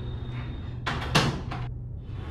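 A wooden door moving, a short burst of sound with a sharp knock about a second in, over a low steady hum.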